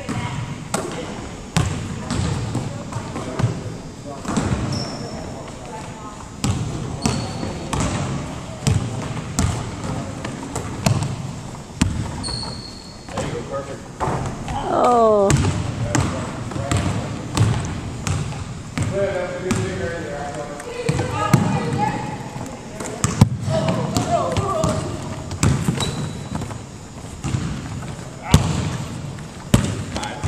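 A basketball bouncing and being dribbled on a hardwood gym floor in a pick-up game, a thud every second or so. Brief high sneaker squeaks and players' scattered voices and calls come through between the bounces.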